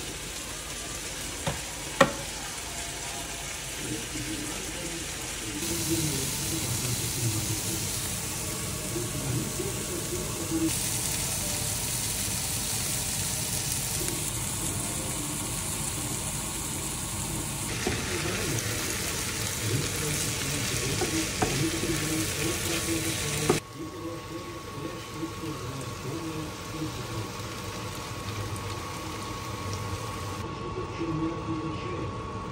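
Vegetables frying in a pan: a steady sizzle with stirring, broken by cuts. There is a sharp knock about two seconds in.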